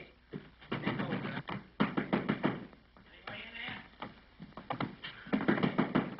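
A scuffle: a rapid, irregular run of knocks and thumps, in clusters, mixed with short wordless grunts and shouts.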